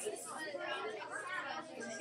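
Indistinct background chatter: several people talking at once, no clear words.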